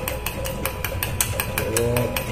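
A metal spoon beating coffee powder, sugar and a little milk in a small steel bowl, clicking against the bowl about six or seven times a second. The hand-beating whips the thick coffee paste toward a froth.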